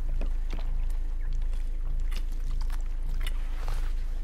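A person drinking from a plastic squeeze bottle: short wet gulps and crinkles of the plastic, over a steady low hum.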